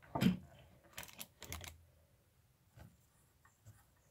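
Faint handling noises from a plastic Lego building and its paper canvas piece being touched: a few soft clicks and rubs, one just after the start, a small cluster about a second in, and a last light tick near three seconds.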